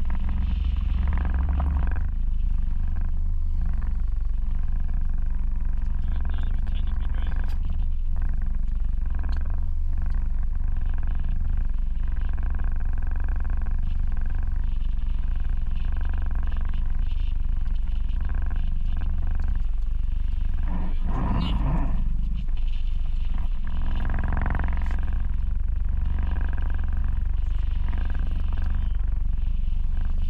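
Steady wind rumble buffeting the microphone on a small boat in open, choppy water. Brief muffled voices come in about two-thirds of the way through.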